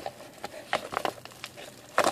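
Hands handling a padded paper bubble mailer: faint, scattered crinkles and small taps of the paper envelope.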